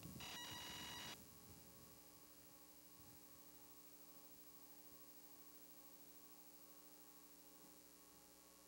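Near silence with a faint steady electrical hum, opening with a brief pitched tone of about a second.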